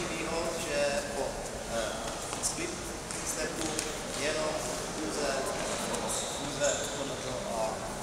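A man's voice talking in a large, echoing hall, with a few short, sharp knocks.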